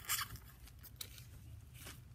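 Beaded trim rustling and clicking as fingers pick at the beads, in two short bursts, one at the start and one near the end, with faint small clicks between.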